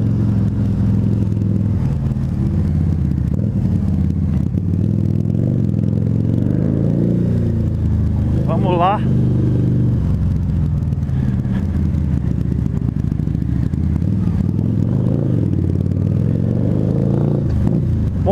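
Harley-Davidson V-Rod Muscle's 1250 cc liquid-cooled V-twin, breathing through Vance & Hines Competition Series slip-on exhausts, running at low speed in traffic with its revs rising and falling gently, heard from a microphone inside the rider's helmet.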